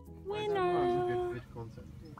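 A person's voice giving one long held call of about a second, rising at the start and falling away at the end, with the background music cut out.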